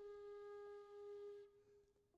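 Background flute holding one long, faint final note that dies away about three-quarters of the way through.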